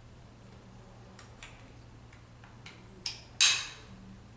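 KED chest strap being fastened: a few light clicks of buckle and webbing, then one sharp snap about three and a half seconds in as the strap buckle latches.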